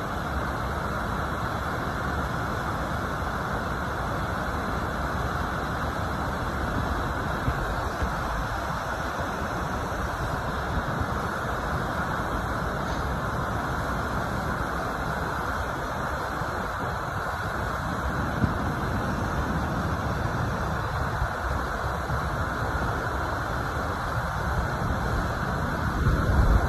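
A waterfall dropping in two steps over rock into a shallow pool: a steady rushing noise that holds an even level throughout.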